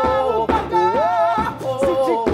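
Two male voices singing a show tune in harmony with piano accompaniment, holding long notes that bend and slide in pitch.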